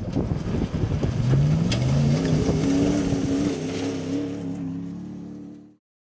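Chevrolet Silverado pickup truck's engine accelerating: its pitch rises, dips once and rises again, then holds steady before fading out shortly before the end.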